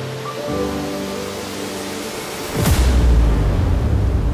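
Logo intro sting: sustained synth notes under a swelling whoosh, then about two and a half seconds in a sudden deep boom that rumbles on loudly to the end.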